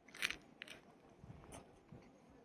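A person biting into a crusty bread sandwich and chewing it. There is a loud crunch just after the start, then a few smaller crunches and chewing.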